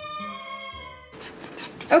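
Background music that stops about a second in, followed by soft scraping and stirring of a wooden stick mixing thick chalk paint and Saltwash powder in a plastic container. A woman starts speaking at the very end.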